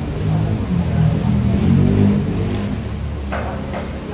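A motor vehicle's engine rumbling low, loudest about two seconds in and then fading.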